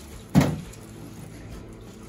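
Hot noodle water poured from a stainless steel pot into a plastic colander in a stainless steel sink, with one sharp thump about a third of a second in, the loudest thing heard.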